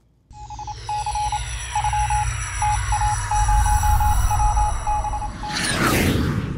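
Electronic transition sound effect: a deep rumble under several falling whistling sweeps, with a single beep tone stuttering on and off in an irregular, code-like pattern, ending in a whoosh just before music comes in.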